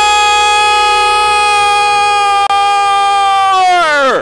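Arena goal horn blaring a single steady chord to celebrate a home goal; near the end its pitch sags and drops away as the horn winds down.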